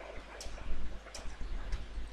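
Computer keyboard being typed on: a few separate keystroke clicks, over a low steady hum.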